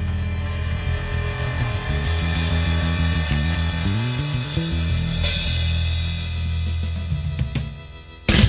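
Electric blues band's instrumental ending to a song: drums with cymbal crashes, a walking bass line and a sustained chord, dying away near the end.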